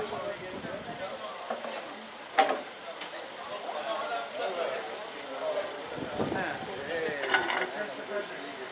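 Street ambience of a busy pedestrian shopping lane: passers-by talking in the background over a general hiss of street noise. A sharp knock comes about two and a half seconds in, and a brief clatter near the end.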